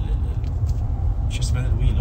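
Steady low rumble of a car's road and engine noise inside the cabin, with a man's talking over it in the second half.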